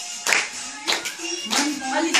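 A group clapping their hands along to dance music, sharp claps about every half second, with a song's singing underneath.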